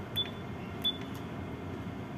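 Two keystrokes on the Furuno ECDIS keyboard while typing a name, each giving a short high beep with a click, about a quarter-second and just under a second in, over a steady low equipment hum.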